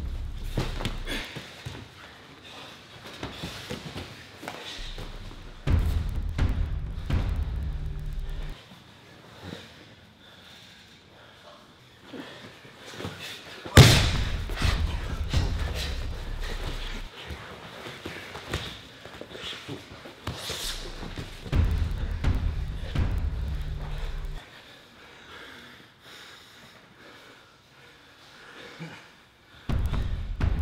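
Thuds and scuffling of two jiu-jitsu players in gis grappling on foam mats, with one loud thump about fourteen seconds in.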